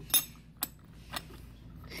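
Steel needle plate of a Juki DDL-5550N industrial sewing machine clicking against the machine bed as it is fitted into place over the feed dog: three light metallic clicks, the first and loudest just after the start, the others about half a second apart.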